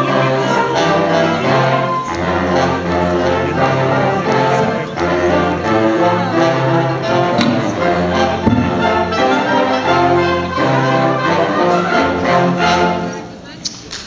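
Live wind band of brass and saxophones playing a piece with a moving bass line; the music stops about a second before the end.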